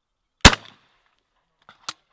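A single shotgun shot from an over-and-under shotgun fired at a clay target, loud and sharp with a short tail. Two short, faint clicks follow near the end.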